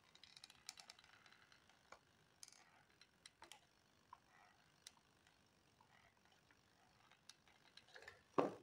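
Faint, scattered clicks of a hot glue gun's trigger mechanism being squeezed and of hard plastic parts being handled, several quick clicks in the first second and single ones spaced through the rest.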